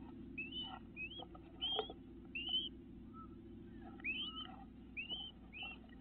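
Great crested flycatcher calling: a string of short, rising whistled notes, about eight in six seconds, over a low steady hum.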